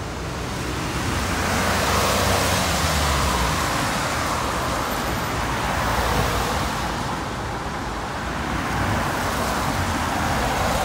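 Road traffic passing close on a wet road: tyre noise on the wet surface with a low engine rumble underneath, swelling as cars go by, about two seconds in, around six seconds and again near the end.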